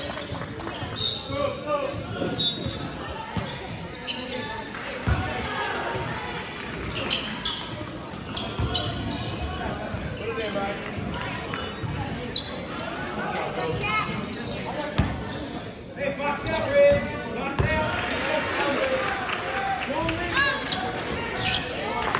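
A basketball bouncing on a hardwood gym floor during a game, with scattered voices of players and spectators echoing in the gym.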